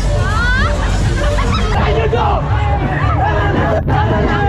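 Dense crowd babble: many people talking and shouting over one another, over music with a steady, heavy bass. The sound cuts out for an instant near the end.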